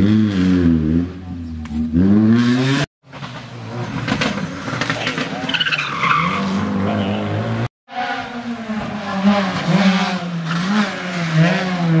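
Rally car engines revving up and down as the cars brake and accelerate through a tight hairpin, one of them a Subaru Impreza WRX STI, with a brief falling tyre squeal as it slides through about halfway in. The sound breaks off suddenly twice, at the cuts between passes.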